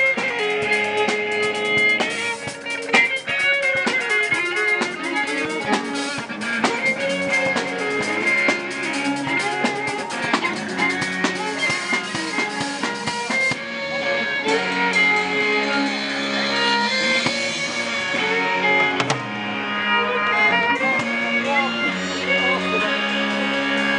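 Live band music: an electric violin played through a small amplifier carries a melody of gliding, sustained notes over a drum kit and guitar.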